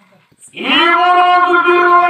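A voice swoops up into a long, high sung note and holds it steadily, beginning about half a second in after a brief quiet gap.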